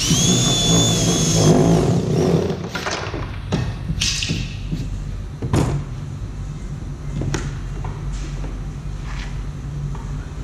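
Cordless drill running with a steady high whine for about a second and a half as it bores a starter hole through the plastic kayak deck. After it, a few separate knocks and clatters as tools are handled, over a steady low hum.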